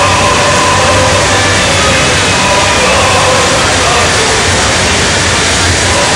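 Armoured military vehicles driving past in a loud, steady din of engine rumble, with crowd noise mixed in.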